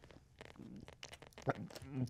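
A hesitation pause in a man's speech: a few faint clicks and breath noise, then a brief voiced sound about a second and a half in as he starts to speak again.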